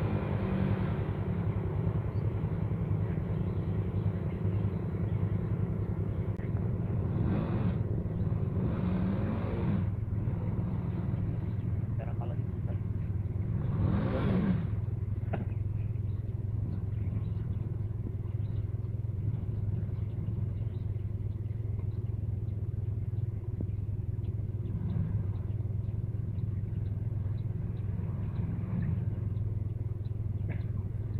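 Honda EX5 underbone motorcycle's small single-cylinder four-stroke engine running hard under load as it struggles for grip up a slippery mud hill. The revs surge a few times about a quarter of the way in and again about halfway through, then settle to a steady drone.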